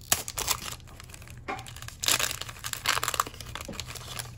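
A Pokémon card booster pack's plastic foil wrapper being torn open and crinkled by hand, with crackly rustling loudest about halfway through.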